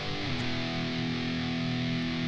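Distorted electric guitar sounding an open E power chord, slid into from the third fret and left to ring out steadily.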